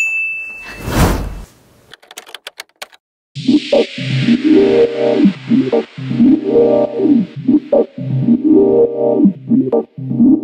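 Edited-in sound effects: a short high ding, a whoosh about a second in, and a quick run of clicks. Then background electronic music with a steady beat and keyboard-like synth chords starts about three seconds in and continues.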